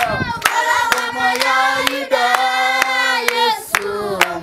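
A group of children and a man singing a song together in unison, holding long notes, while clapping their hands in a steady beat of about two claps a second.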